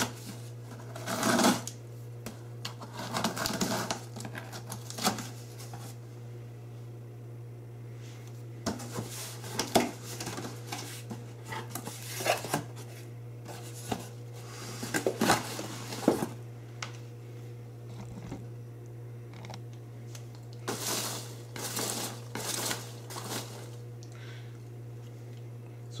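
A cardboard shipping box being opened by hand: scattered bursts of packing tape being cut and torn and cardboard flaps rustling, with foam packing peanuts shifting inside. A steady low hum runs underneath.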